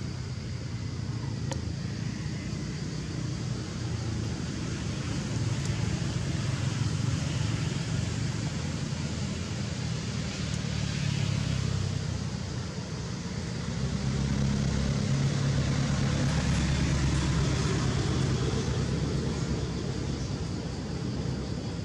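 Steady outdoor background rumble, swelling louder several times, most of all from about fourteen seconds in.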